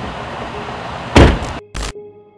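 A pickup truck door slamming shut about a second in, over a steady background hiss, followed by a second short thud near the end as a soft sustained music tone begins.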